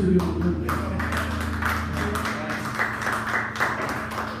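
A small audience applauding and talking as a song ends, while a low sustained tone from the band's amplified instruments dies away a little over halfway through.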